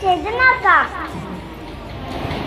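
A young child speaking in a high voice into a microphone for about a second, then steady background noise.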